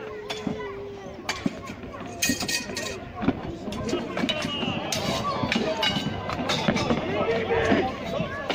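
Irregular knocks and clanks of medieval reenactors' hand weapons and shields striking in a staged fight, mixed with men's shouting and a crowd's voices. A single held shout rings out in the first second.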